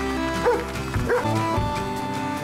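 Background music with steady held notes, over which a dog gives two short yelps, about half a second and a second in.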